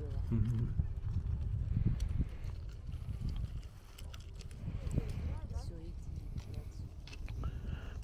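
Footsteps crunching over beach pebbles, a scatter of short irregular stone clicks, over a steady low rumble of wind on the microphone.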